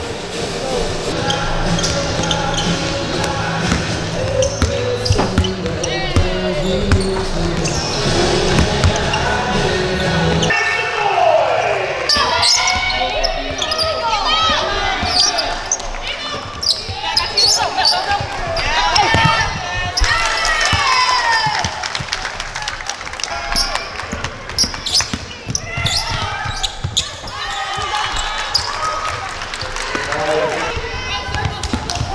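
Music with a steady bass for about the first ten seconds, then live basketball game sound: a ball bouncing on a hardwood court, with players' voices calling out.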